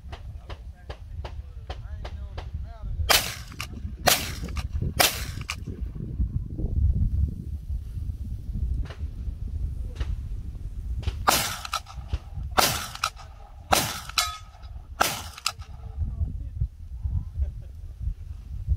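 Shots from a short-barrelled 300 Blackout AR-style rifle, fired one at a time in two strings: three shots about a second apart, then four shots a little over a second apart. Fainter quick cracks come in the first few seconds, and a steady low wind rumble on the microphone runs underneath.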